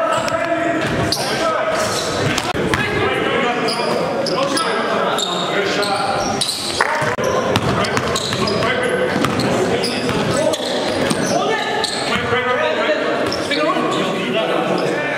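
A basketball dribbled on a gym floor, the bounces echoing in a large hall over a steady background of voices.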